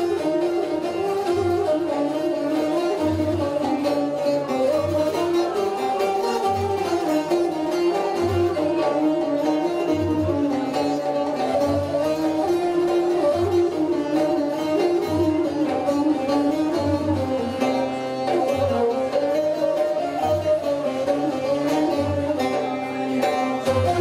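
Instrumental interlude of a Turkish folk song played live: a bağlama (long-necked saz) carrying the melody with bowed strings, over a low thump roughly every second and three-quarters.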